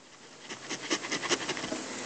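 Stylus on a drawing tablet making a run of quick, short scratching strokes, shading in part of a diagram; the strokes start about half a second in and come irregularly, several a second.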